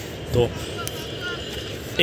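Steady low rumble of distant engines across the river, with a faint high whine over it.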